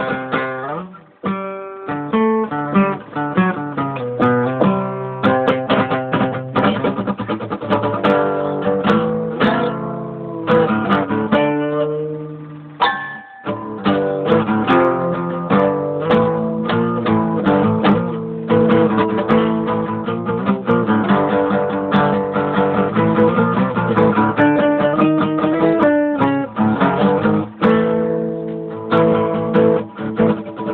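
Acoustic guitar played steadily, a run of plucked notes and chords with a brief break about thirteen seconds in.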